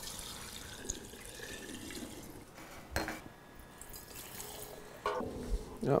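Infused moonshine poured from a stainless steel pot through a plastic funnel into a glass mason jar, a steady splashing stream. A single sharp knock comes about three seconds in, after which the pour is quieter.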